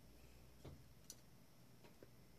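Near silence, with a few faint ticks and a soft thump as a fine dotting tool dabs nail polish onto a stamped decal on a mat.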